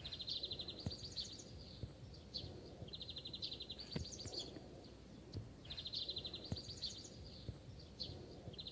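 A small bird singing faintly: a short phrase of a rapid buzzy trill followed by a few higher notes, repeated three times about every three seconds, over faint background noise.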